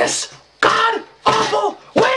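A man's voice in about three short, strained outbursts without clear words.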